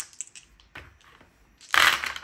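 A handful of six-sided dice thrown into a wooden dice tray. A few faint clicks come first, then a loud clatter near the end as the dice land and rattle against the tray.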